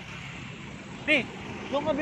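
A woman's short spoken exclamations over a steady outdoor background hiss, just after background music cuts off.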